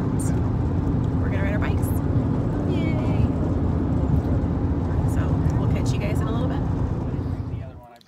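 Steady low road and engine rumble inside a moving car's cabin, with faint voices over it; it cuts off just before the end.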